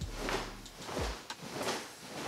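Cotton karate gi rustling in a steady rhythm of swishes, about one every two-thirds of a second, as the body twists back and forth at the hips. There are two low thumps, one at the start and one about a second in.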